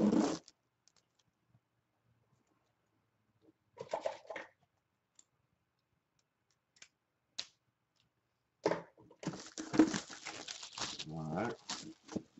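A cardboard jersey box being handled on a desk: a brief rub at the start, a short shuffle about four seconds in, a few small clicks, then from about nine seconds a busy stretch of scraping and tearing as the box is picked up and worked at, with some mumbled words near the end.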